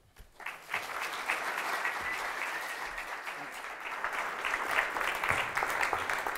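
Audience applauding, starting about half a second in and holding steady.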